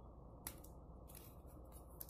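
Small scissors snipping the thin plastic body cowl of a Tamiya mini 4WD car: one sharp snip about half a second in, then a run of light, faint snips and plastic rustling in the second half, over a steady low hum.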